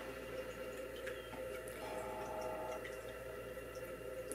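Quiet room tone with a faint steady hum and a few faint scattered ticks.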